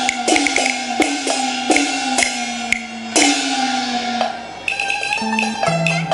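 Cantonese opera percussion playing the opening of a piece: sharp strikes about every half second, each ringing tone sliding down in pitch, mixed with wood-block clicks. Near the end a melody instrument comes in.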